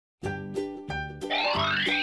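Upbeat children's cartoon music with a steady beat, starting just after a brief silence, with a rising glide sound effect over it from a little past a second in.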